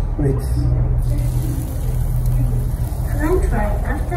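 A steady low rumble runs throughout, with faint talking about half a second in and again near the end.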